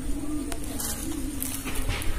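A bird calling: one low, drawn-out call that wavers slightly in pitch and ends shortly before the close.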